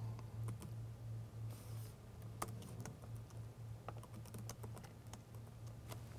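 Typing on a computer keyboard: faint, irregular key clicks, with a low steady hum underneath.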